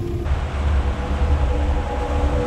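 Motorboat running at speed across open water: a steady, heavy low rumble of outboard engine, hull and wind, starting abruptly about a quarter second in.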